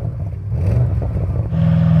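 Audi RS6 Avant's 4.0-litre twin-turbo V8 with a low, pulsing exhaust note at low revs. About one and a half seconds in it turns into a smooth note that rises in pitch as the car accelerates.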